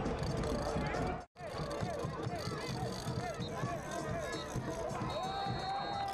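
Stadium crowd noise after a goal: many voices shouting and cheering at once. The sound cuts out for a moment about a second in, and a steady high tone starts near the end.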